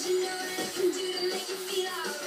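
Upbeat song with sung vocals playing from a television, the voice holding one long note.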